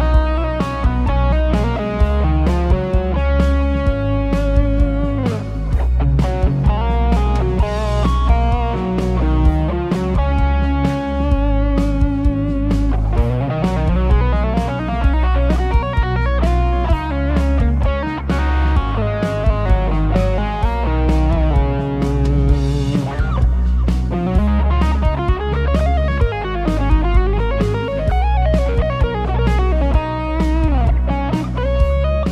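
Electric guitar playing a fast legato lead lick in sixteenth-note runs, with sliding notes, over a backing track with a steady bass line and drum hits.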